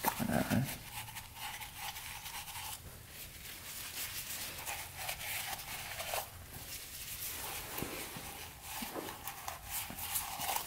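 A shop towel rubbed and scrubbed around the inside of a motorcycle engine's oil-filter housing, making irregular rustling and scuffing of cloth on metal, with a short louder thud at the very start.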